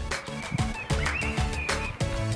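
Background music with a steady beat, starting suddenly.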